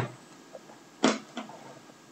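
A flute case being handled and set down: a short knock about a second in, then a lighter one just after.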